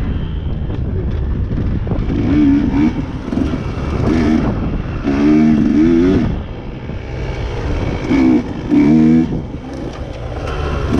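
Dirt bike engine revving up and falling back in several short bursts as the throttle is opened and closed, over a steady low rumble.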